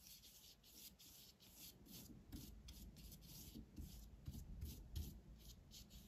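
Faint scratchy rubbing of a flat paintbrush loaded with gouache being stroked back and forth across paper, about two to three strokes a second.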